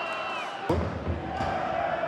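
Football stadium crowd and pitch ambience in a TV match broadcast. A faint, thin high whistle is heard in the first half-second, then louder crowd and pitch noise comes in suddenly about 0.7 s in.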